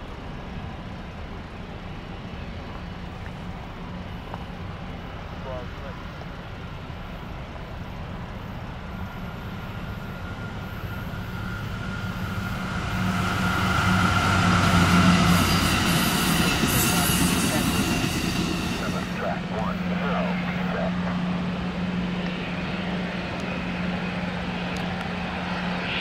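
Amtrak passenger train with bi-level stainless-steel cars approaching and passing at speed: engine hum and wheel-on-rail rumble grow to their loudest about halfway through, then stay loud as the cars roll by.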